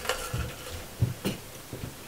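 Metal cocktail shaker tins handled and set down on the bar top: a few light knocks and clinks.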